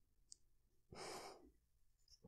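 A man's soft, breathy exhale, like a quiet sigh, about a second in, against near silence.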